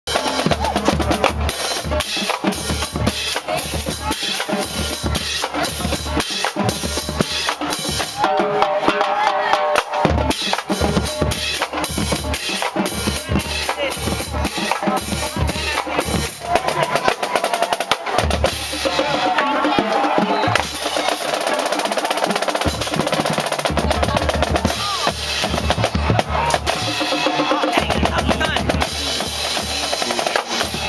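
Marching band drumline playing a cadence: snare drums, bass drums and crash cymbals in a steady, rapid rhythm. The bass drums drop out briefly a couple of times in the middle.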